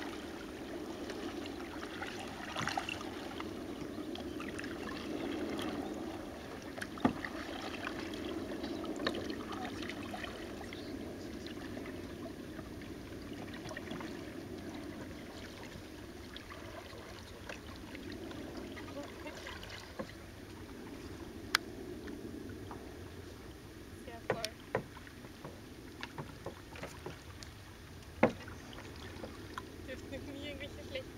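Water moving quietly against a canoe's hull as it drifts, with a few sharp knocks on the boat scattered through and several more near the end.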